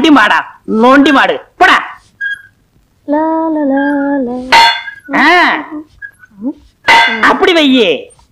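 A run of short, pitched vocal cries, each rising and falling in pitch, with one held, wavering tone of about a second and a half partway through.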